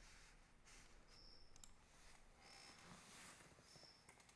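Near silence: faint room tone with a few faint clicks and a faint short high tone that recurs about every second and a quarter.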